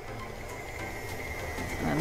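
KitchenAid Artisan stand mixer running steadily, its beater working bread dough in the steel bowl.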